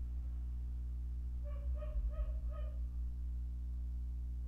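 A steady low electrical hum, with four short, high-pitched whimpering animal calls about halfway through.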